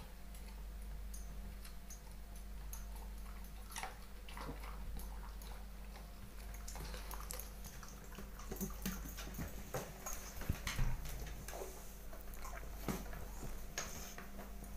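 A dog eating leaves taken from a hand and nosing about on a wooden floor: scattered small clicks and mouth sounds, busier and louder in the second half, over a steady low hum.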